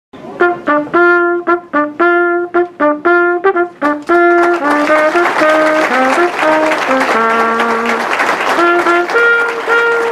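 Brass music playing a tune in short, detached notes, moving into longer held notes; hand clapping joins in about four seconds in.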